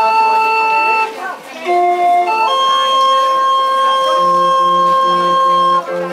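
Raffin hand-cranked barrel organ playing a pop tune in long held pipe notes, with a short break in the melody a little after a second in. About four seconds in, a regular bass accompaniment of short repeated notes joins under a long sustained melody note.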